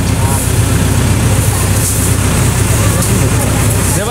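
A steady low engine rumble, like a vehicle idling, with a high hiss above it and faint voices.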